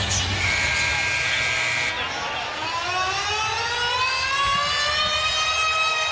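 Arena sound system playing a siren-like sound effect over crowd noise: a steady high tone for about a second and a half, then a long rising sweep that climbs in pitch for about four seconds.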